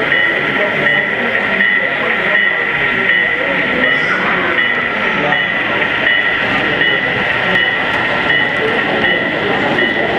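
Sound-equipped HO-scale Southern Pacific diesel locomotive model running with a freight train, its sound decoder playing diesel locomotive sound with a high tone that pulses about three times a second. Crowd chatter is underneath.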